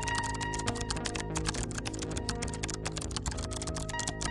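Rapid computer-keyboard typing clicks, many a second, with background music of sustained notes underneath.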